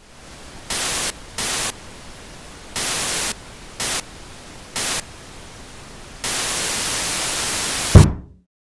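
Television static hissing, cutting in loud in short bursts over a fainter steady hiss, with a longer burst near the end. It stops with a single heavy thump of a fist banging on top of the TV set.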